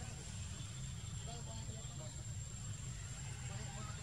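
A steady low rumble with faint, indistinct chatter over it and a thin, steady high whine.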